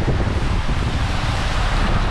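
Wind buffeting the microphone: a loud, steady, deep rumble of wind noise.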